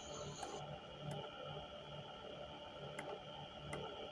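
Faint room tone: a steady low hum and faint whine, with a few soft clicks spaced through it.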